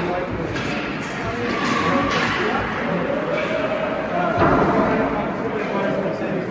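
Indistinct voices echoing in a large ice-rink hall, with a single sharp thump about four and a half seconds in.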